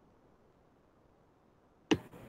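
Near silence with faint line hiss, then a single sharp click near the end as a video-call participant's microphone is unmuted and his audio comes on.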